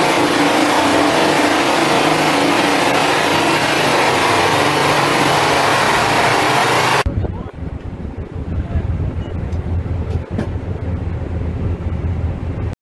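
Loud, steady roar of engine and airflow noise from an aircraft, cutting off abruptly about seven seconds in to a quieter low rumble with a few faint clicks.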